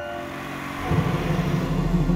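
A Toyota Corolla sedan's engine running: a low, steady rumble that comes in strongly about a second in.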